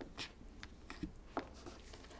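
Faint, scattered small clicks and scratches over quiet room tone, about half a dozen in two seconds.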